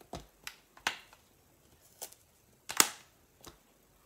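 About six short, sharp clicks and taps from stamping supplies being handled on a cutting mat, a clear acrylic stamp block among them, the loudest about three seconds in.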